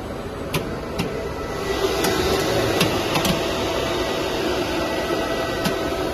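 Steady hum of machinery on a running plastic sheet extrusion line, with a few faint steady tones. Several sharp clicks sound through it. The noise gets louder about two seconds in.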